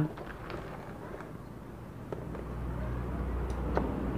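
H&L 160A inverter welding machine being switched on with its MOSFETs removed: a few light clicks, then a low steady hum that sets in about two seconds in and grows louder as the machine comes up.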